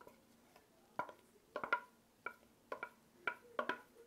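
Light, irregular metallic clinks and taps of baking utensils against an aluminium cake tin and mixing bowl, about ten in four seconds, each with a brief ring.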